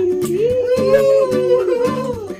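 A song with guitar accompaniment: a singer holds one long, slightly wavering note over a steady strummed beat.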